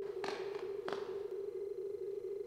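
A steady single-pitched electronic tone, with two soft taps about two-thirds of a second apart.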